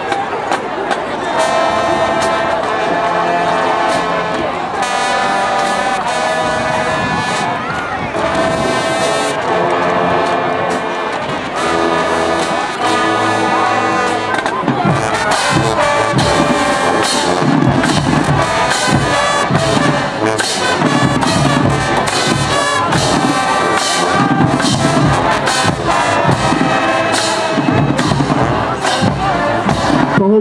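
High school marching band playing: the brass holds long chords for about the first half, then the drums come in with a steady beat under the horns.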